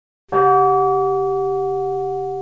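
A small hanging metal bell struck once about a third of a second in, then ringing on with several steady overtones that slowly fade.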